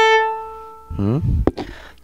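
Violin holding a bowed note, the A ("la"), steady at first and then fading out over about a second. A brief bit of the player's voice follows.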